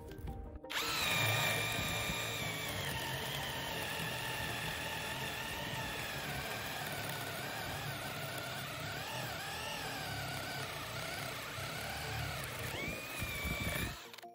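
Parkside Performance PSBSAP 20-Li C3 cordless drill on speed two boring a 25 mm spade bit into a wooden beam. The motor whine starts about a second in and drops in pitch as the bit bites into the wood. It wavers under load through the cut, then rises again near the end as the load eases.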